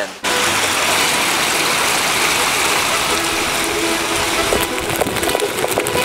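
Shallow brook water rushing steadily down a paved channel, close to the microphone, with a few light clicks near the end.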